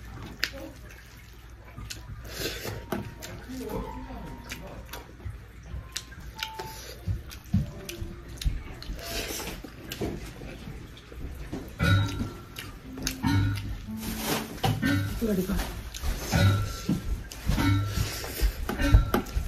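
Eating by hand from a stainless-steel plate: fingers mixing rice, small clicks against the metal, and chewing. Voices and music carry on in the background, growing louder about two-thirds of the way through.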